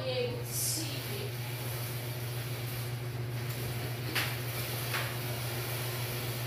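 Kick scooter rolling on a concrete floor, with a couple of light knocks a few seconds in, over a steady low hum.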